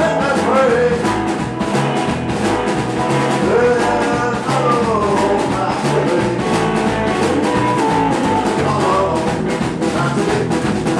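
Rockabilly band playing live, with upright bass, drums and electric guitar driving a steady beat and a lead vocal over it.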